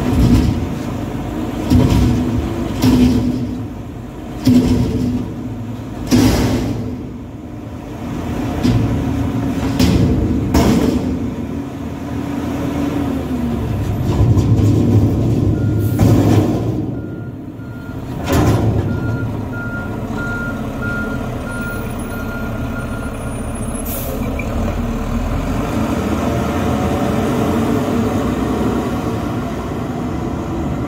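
Front-load garbage truck working: its diesel engine runs under load while the forks come down, with about half a dozen sharp bursts of noise in the first twenty seconds. Just past the middle a reversing beeper pulses for several seconds, and the engine then runs steadily as the truck pulls away.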